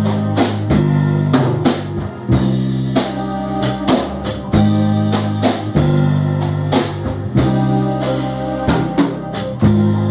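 Live instrumental music: an electronic keyboard is played over a steady drum beat with a sustained bass and chord backing.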